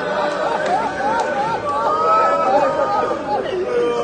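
A man chanting a Shia mourning lament (noha) in a quickly wavering, ornamented melody, with a crowd's voices underneath.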